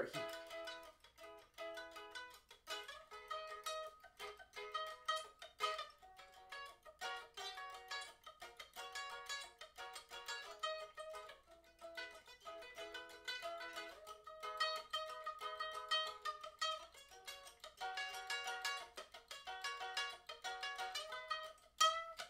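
Ukulele with a metal pan body, played with quick repeated plucked notes through a chord progression. It is fingered as barre chords on the top three strings with the fourth string skipped, so there are no low notes.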